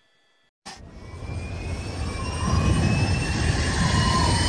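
A rising whoosh sound effect, like a jet flying in. It starts suddenly about half a second in and builds steadily louder, with faint whistling tones sliding slowly upward.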